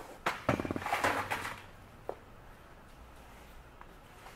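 Handling noise from the clear vinyl hose lines being moved, with clothing rustle: a few knocks and rustles in the first second and a half, then a single small click.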